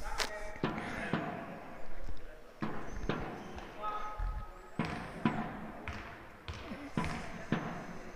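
A basketball bouncing on a hard sports-hall floor, a series of irregularly spaced bounces as a wheelchair basketball player readies a free throw.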